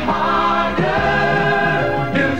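A TV station's news promo jingle: a chorus of voices singing over backing music.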